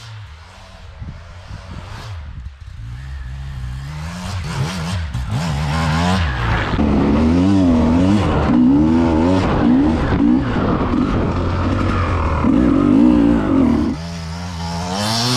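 Beta RR 300 two-stroke enduro motorcycle engine being ridden, revving up and falling off again and again. It grows louder over the first half.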